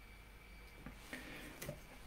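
Near quiet: faint room tone with a few soft clicks, one a little under a second in and another near the end, and a brief soft rustle between them.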